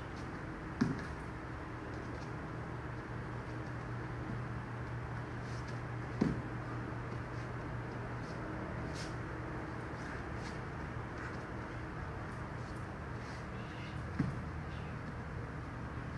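Three thuds of bare feet landing on a foam training mat during shadowboxing, about a second in, a third of the way through and near the end, over a steady low room hum, with a few faint short hisses between.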